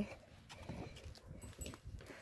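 Faint, irregular light knocks and shuffling of a goat's hooves on the ground as it moves about close by.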